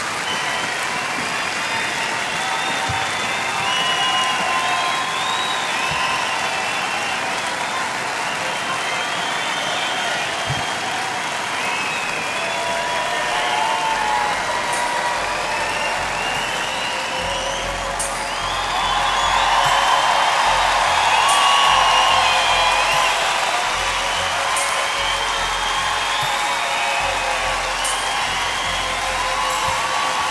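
Large arena crowd applauding and cheering, with many shrill whistles and whoops over the clapping. About halfway through a low rhythmic thumping joins in, and the crowd noise swells for a few seconds about two-thirds of the way through.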